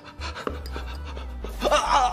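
A man breathing hard over a low, steady music drone. A voice comes in near the end.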